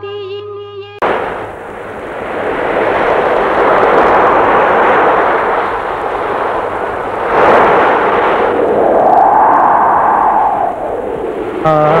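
Ocean surf breaking on a shore: a loud, steady rush of waves that swells and falls, with one bigger crash about seven and a half seconds in. It follows the end of a song about a second in, and new music starts just before the end.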